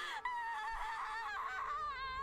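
Anime audio playing quietly: a young woman's voice-acted emotional cry, one long, wavering, high-pitched note.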